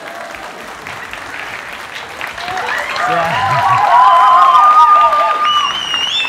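Studio audience applauding; the applause swells louder about halfway through.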